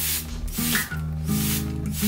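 A slow song playing, over which a hand spray bottle mists water onto monstera leaves in short bursts of spray.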